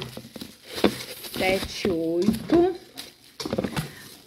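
Clear plastic bags on polycarbonate cups crinkling and rustling as the wrapped cups are lifted and handled, with scattered light clicks and knocks.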